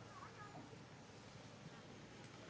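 Near silence: faint outdoor background with a faint steady buzz.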